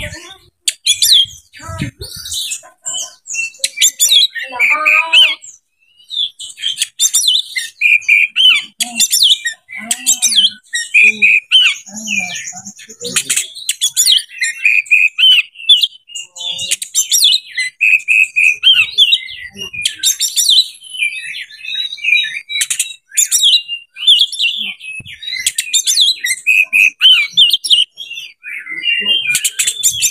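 Oriental magpie-robin singing a long, varied song of short whistled phrases and chattering notes, one after another, with only a brief lull early on.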